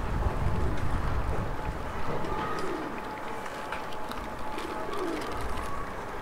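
Feral pigeons cooing: several short falling coos through the middle, over a low wind rumble on the microphone in the first couple of seconds and a faint steady hum.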